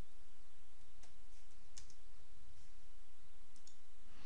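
A handful of faint, scattered clicks from a computer keyboard and mouse over a steady low hum, the clearest a little under two seconds in.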